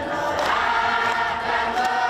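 A group of women's voices chanting a prayer together, holding long drawn-out notes.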